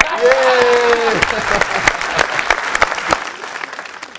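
Studio audience applauding, with a drawn-out exclamation from a voice over the first second or so. The clapping thins out toward the end.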